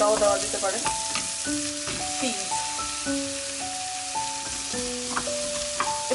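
Diced vegetables sizzling in hot oil in a stainless-steel pan while a wooden spatula stirs them against the pan. Soft background music of held notes plays underneath.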